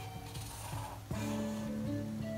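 Soft background music with a plucked-string sound. A new held note comes in about a second in.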